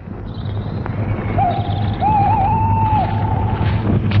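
Film background score: a single high held note that bends and wavers, entering about a second in and fading near the end, over a steady low hum.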